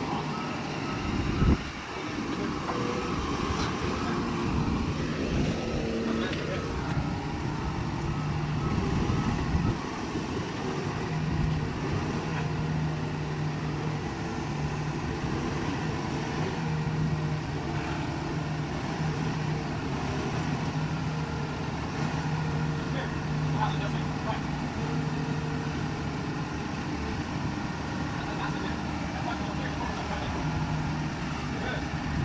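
Engine of a heavy forklift running steadily as the machine maneuvers, with one sharp loud knock about a second and a half in.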